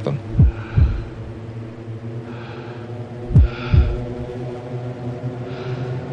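Dramatic trailer sound design: a steady low drone with two heartbeat-like double thumps about three seconds apart, each thump dropping in pitch.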